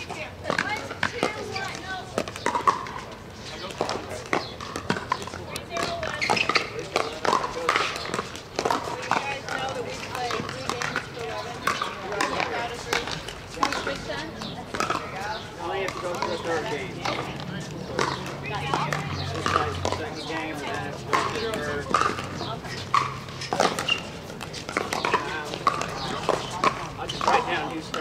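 Pickleball paddles striking the hollow plastic ball on several courts at once: an irregular run of sharp pops throughout, with people talking in the background.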